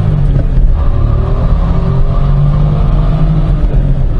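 Volkswagen up!'s 1.0-litre three-cylinder engine heard from inside the cabin, pulling the car along under acceleration, with a short break in the note about half a second in as a gear is changed. The engine sound comes through subdued by the car's good sound insulation.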